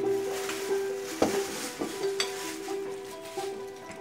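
Tissue paper rustling and crinkling as a gift is drawn out of a paper gift bag, with one sharp knock about a second in. Faint steady background music underneath.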